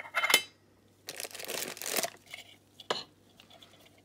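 Opening a Funko Soda tin: a sharp metallic clatter at the start, then about a second of crinkling and rustling packaging as the contents are pulled out, and a single click near the end.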